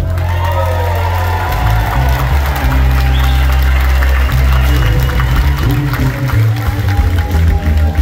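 Live rock band playing an instrumental vamp, with held bass notes under gliding electric guitar lines, while the crowd cheers and applauds.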